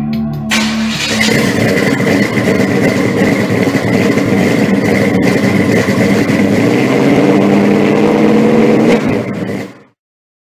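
A car engine running loud and revving, with a steady high whine over it. It starts about half a second in and fades out near the end.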